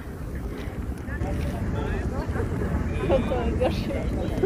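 Steady low rumble of wind buffeting the microphone outdoors, with faint voices in the background.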